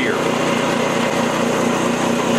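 A JET bench grinder running at speed, its motor and spinning wheel giving a steady hum and hiss, with a steel lawn tractor mower blade held at the wheel for sharpening.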